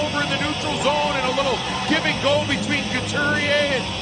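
A broadcast commentator speaking over steady arena crowd noise.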